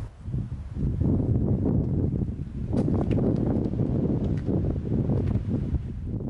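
Outdoor wind buffeting the camera microphone, a rough, rumbling rush that carries on steadily after a brief drop right at the start.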